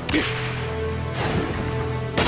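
Two fast whooshing swish effects of a rapid dash, one at the start and a longer one from about a second in, over background music with held notes.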